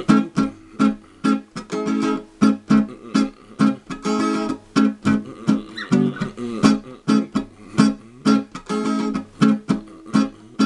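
Guitar strummed on a barre A chord in a dancehall rhythm: a syncopated run of short, choked strokes, with a few longer ringing strums in between.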